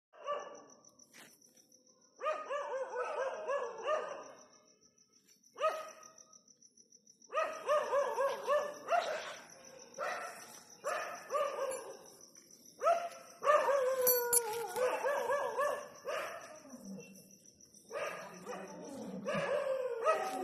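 Dog barking in bouts of quick repeated barks, with short pauses between bouts. A steady high-pitched chirring runs underneath.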